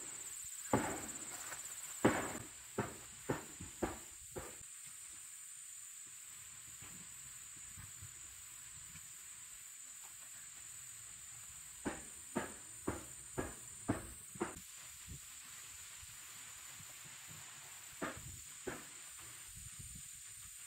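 Hammer blows from carpentry work on a chicken coop, in three runs of strikes about two a second with long pauses between. A steady high-pitched insect drone runs underneath.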